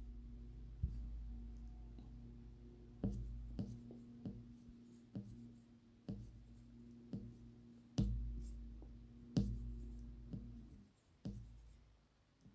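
Fingertip taps and swipes on a smartphone touchscreen: about a dozen faint, irregular taps over a low, steady hum.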